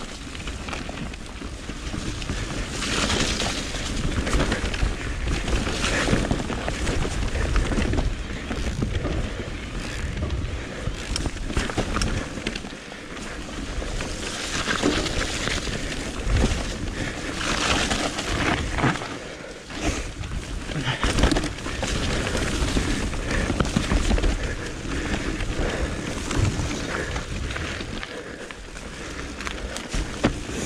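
Mountain bike riding fast down a dirt singletrack: tyres running over soil and roots, with rattles and knocks from the bike over bumps, and wind rumbling on the microphone. The noise swells and eases as the trail changes.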